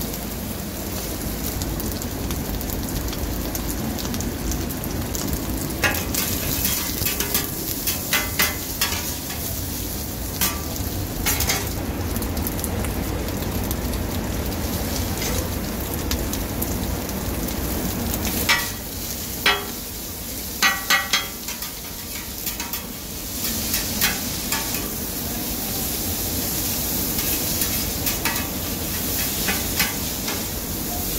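Beef tripe and shredded cabbage sizzling steadily on a flat iron griddle. Metal spatulas click and scrape against the steel plate in quick clusters, about a fifth of the way in and again past the middle.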